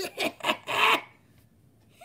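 A man's breathy, near-silent laugh: four quick puffs of breath in the first second, then quiet.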